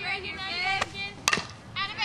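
Two sharp cracks of a softball being hit or caught in batting practice, about half a second apart, the second louder. Under them, high-pitched voices chatter.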